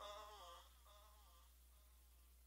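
The song's fade-out: a faint, wavering hummed vocal line dying away during the first second and a half, then near silence.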